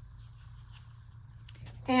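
Faint handling sounds of a folded paper towel and a chip brush being picked up: a light rustle and a couple of small clicks over a steady low hum.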